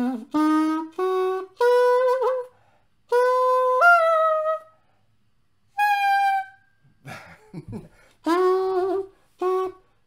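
A black plastic xaphoon, a single-reed pocket sax, played as a series of separate, reedy notes with short gaps between them, working through a major-triad arpeggio; one longer note steps up in pitch partway through. A few soft low sounds come about seven seconds in.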